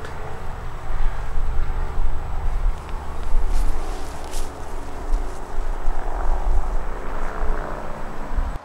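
Steady low rumble of highway traffic, with a couple of soft rustles in the grass as someone stands and walks off.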